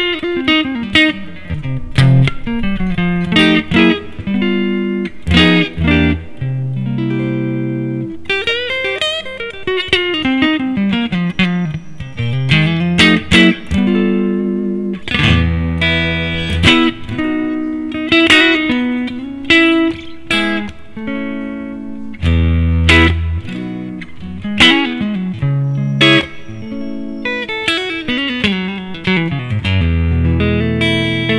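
Tokai AST-52 Goldstar Sound Stratocaster-style electric guitar on its neck pickup, played through a Yamaha THR10 amp: quick single-note runs rising and falling, mixed with held notes and chords.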